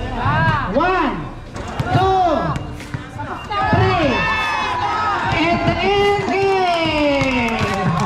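Spectators shouting and calling out in loud rising-and-falling cries, one after another, with a long cry sliding down in pitch near the end.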